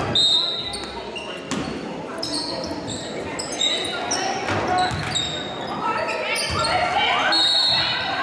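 Basketball game play on a hardwood gym floor: sneakers squeaking in many short, high chirps as players cut and stop, a ball bouncing a few times, and voices calling out in the echoing hall.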